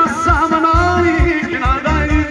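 Balkan folk dance music for a kolo: a singer's wavering, ornamented voice over a fast, steady bass beat.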